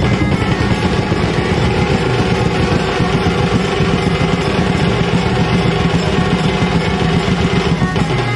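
Street band of drummers playing a fast, dense rhythm on large barrel drums and snare drums beaten with sticks, loud and unbroken, with a melody line carried over the drumming.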